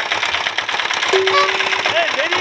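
Engine of a motorcycle-fronted chhakda cart running with a fast, even knocking beat. A steady held tone sounds over it during the second half.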